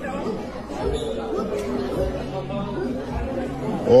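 Speech only: indistinct voices talking, quieter than normal speech.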